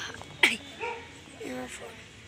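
A dog barking: one loud sharp bark about half a second in, then a few shorter, weaker yelps.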